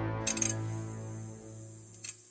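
Title-sting music: a held chord fading out, with a bright, shimmering chime-like sound effect about a quarter second in that leaves a thin, high ringing tone.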